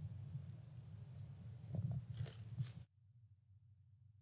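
Low, steady room hum on a lecture microphone, with a few faint knocks about two seconds in. About three seconds in the sound cuts off suddenly to a much quieter hum.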